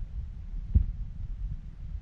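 Wind buffeting the microphone as a low, uneven rumble, with one dull thump about three-quarters of a second in.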